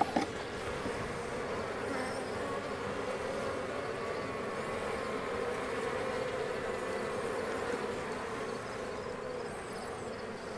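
Honeybees buzzing in a steady, wavering hum around open hives, with a brief knock right at the start.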